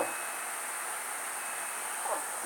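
Steady background hiss with no distinct sound events, the noise floor of the recording between spoken phrases.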